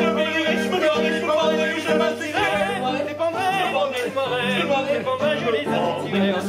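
Operetta singing with strong vibrato over a piano accompaniment that strikes repeated chords about twice a second.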